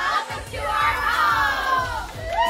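A group of women shouting together in unison, a drawn-out cheer of several voices that falls in pitch near the end.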